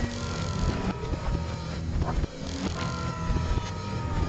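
Film sound effects of robotic assembly arms fitting armour plates onto a suit, played in reverse. Two servo whines slowly fall in pitch, one near the start and one a little past halfway, over a low mechanical rumble with scattered clanks.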